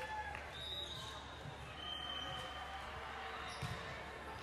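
Sports hall ambience during a volleyball tournament: volleyballs bouncing on the hardwood floors, short high sneaker squeaks, and a murmur of crowd chatter over a steady low hum, with a few ball thuds near the end.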